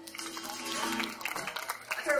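The last held note of an acoustic string band (fiddle, acoustic guitar and upright bass) dies away about a second in, under scattered audience clapping and voices as the song ends.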